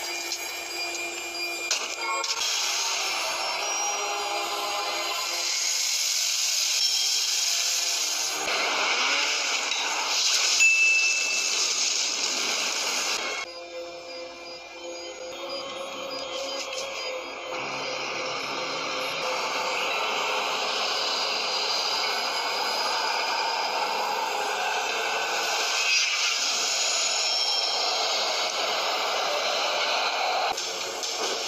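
Film soundtrack: background music mixed with a steady, noisy sound effect. The sound drops abruptly and changes about thirteen seconds in.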